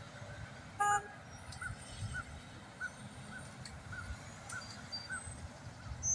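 Outdoor ambience with a low traffic rumble and a single short honk about a second in. A faint high chirp repeats about twice a second.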